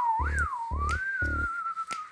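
A whistled melody, one clear tone that wavers up and down and then holds and slides slightly downward, over a low beat pulsing about twice a second that drops out near the end.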